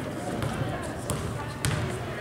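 A basketball being dribbled on a gym floor: several dull bounces, one sharper knock near the end, under a background of crowd and player voices.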